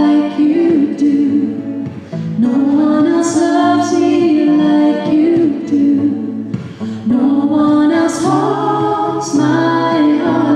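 A woman singing a song with long held notes, in phrases that pause briefly about two seconds in and again near seven seconds.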